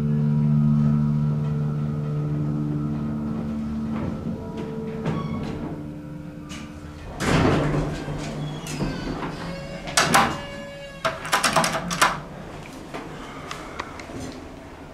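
Montgomery elevator running with a steady low hum. About halfway through, its door slides open with a rush of noise, followed by a run of sharp clicks and rattles from the door gear.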